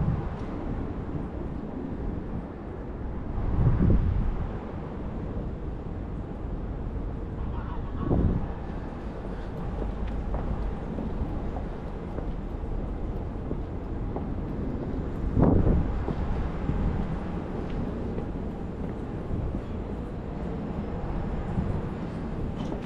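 Wind buffeting the microphone over a steady low outdoor rumble, with three louder gusts about four, eight and fifteen seconds in.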